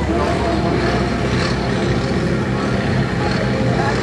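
Landini 9880 tractor's diesel engine running steadily at idle while hitched to the pulling sled, an even low engine note.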